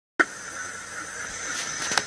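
Steady background hiss with a thin high-pitched whine, starting abruptly with a click just after the start: ambient noise on the launch tower's access arm, under the footage of the crew walking out to the orbiter.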